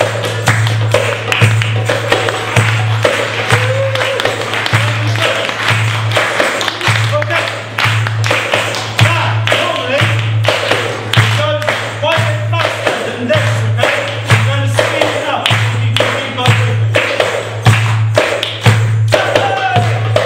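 Darbuka (Middle Eastern goblet drum) playing a driving steady rhythm: deep resonant doum strokes with sharp tek slaps between them, under a wavering soprano saxophone melody.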